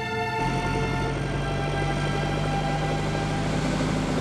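Steady low engine drone of a motorboat on open water, with a wash of noise, taking over from orchestral music about half a second in. The music carries on faintly beneath it.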